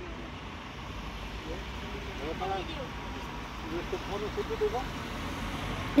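Faint voices of people talking at a distance over a steady low rumble.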